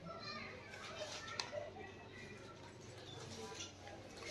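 Faint background chatter of several voices, with a single sharp click about a second and a half in.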